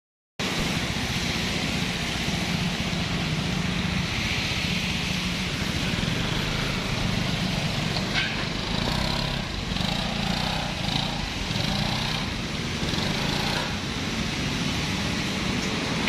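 Yamaha XMAX 250 scooter's single-cylinder engine running steadily at low speed as it is ridden onto a wash rack, over a constant hiss.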